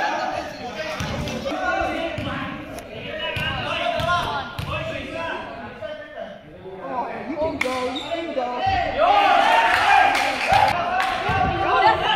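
A basketball bouncing on a gym floor in a series of thuds as a player readies a free throw, under the chatter of voices in the hall.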